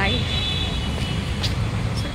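Busy road traffic noise: a steady low rumble of vehicles, with a high steady tone through the first second and voices mixed in.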